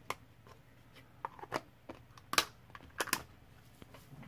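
Scattered sharp clicks and taps of square resin diamond-painting drills and tools being handled, about six in all, the loudest a little past halfway.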